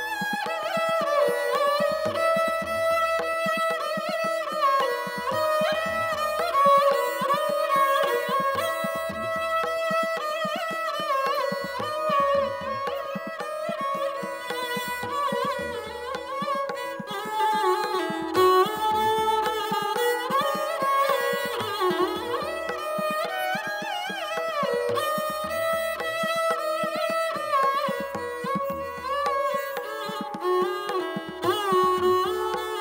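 A solo sarangi, bowed, playing a traditional Rajasthani folk melody in one continuous line that slides between notes.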